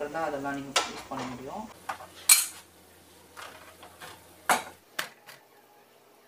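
A few sharp separate clinks and knocks of kitchen dishes and utensils being handled at the stove, the loudest about two seconds in and two more near the end.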